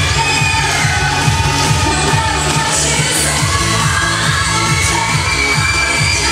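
Pop dance music with a steady, driving bass beat, played loud over loudspeakers for an aerobic dance routine.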